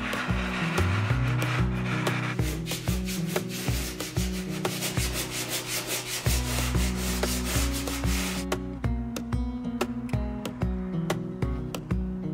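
Hand sanding with a sanding sponge on a wall, rapid rubbing strokes that stop sharply about two-thirds of the way through, under background music.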